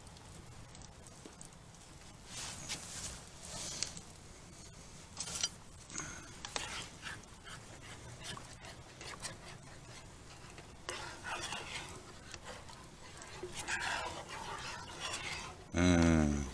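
Bread rolls being pulled apart and set down on a wire grill grate over a campfire: scattered soft rustling and scraping. Right at the end, a short, loud sound that falls in pitch.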